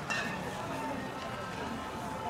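Indistinct background voices of people talking, with a short knock just after the start.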